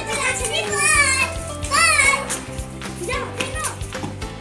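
Children's high, wavering cries and calls over background music with a steady beat: one stretch through the first two seconds, another shorter one about three seconds in.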